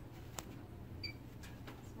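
Faint clicks and one brief, soft high beep about a second in, over quiet room tone, from an eye-testing instrument for corneal thickness being lined up.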